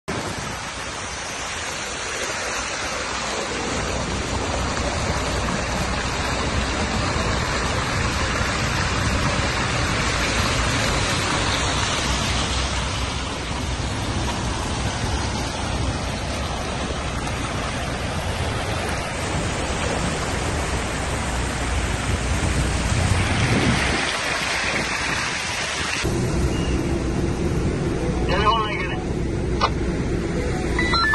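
Floodwater rushing and churning across a street, a loud, steady rush of water. About 26 seconds in the sound changes to a thinner rush with a low steady hum, and a few sharp knocks come near the end.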